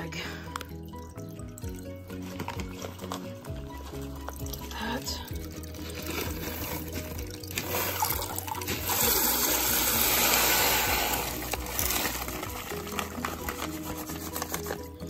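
Purple and black aquarium gravel poured from a bag into a 10-gallon tank: a rushing pour that swells about eight seconds in, is loudest for about three seconds, then fades. Background music plays throughout.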